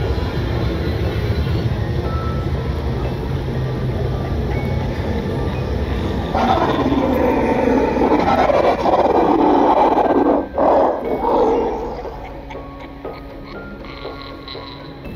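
Background music with a low, steady drone. A loud rushing noise comes in about six seconds in, breaks briefly, and stops near twelve seconds, after which the sound is quieter.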